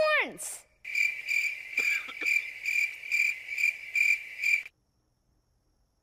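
Cricket chirping sound effect, a steady high trill pulsing about twice a second: the cartoon cue for a joke falling flat. It cuts off suddenly near the end.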